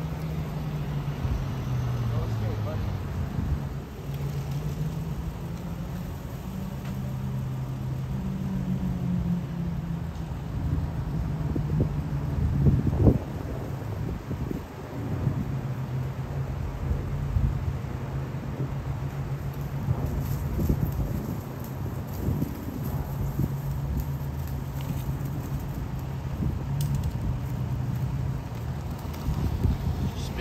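A vehicle engine running steadily, its pitch stepping up and down a few times, with a sharp knock about thirteen seconds in and a few lighter knocks later.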